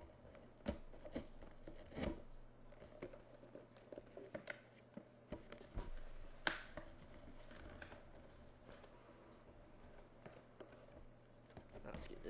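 Knife blade cutting and scraping at the packing tape on a cardboard mailing box, with scattered sharp knocks and clicks of the box and hands on the desk.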